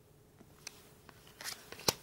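Topps trading cards being handled as one card is moved off the stack to show the next. It is quiet at first, then a few light rustles and ticks of card sliding over card in the second second, with one sharp click near the end.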